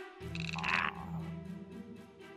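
A cartoon character's low-pitched, wordless vocal noise, held for over a second, with a short higher-pitched squeaky sound near its start, over background music.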